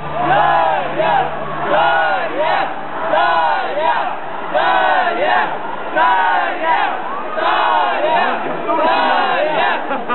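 Concert audience chanting in unison, the same shout repeated about once a second.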